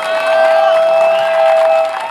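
Microphone feedback through the rally's PA system: a single steady howl held for about three seconds, set off as the microphone changes hands. Crowd noise and cheering sit underneath it.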